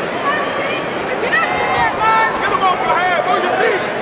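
Spectators in a large arena shouting and yelling, several raised voices overlapping over a steady crowd noise.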